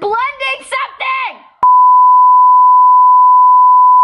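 A voice speaking briefly, then a loud, single steady beep tone added in editing, of the censor-bleep kind, starting about a second and a half in and holding for about three seconds before cutting off suddenly.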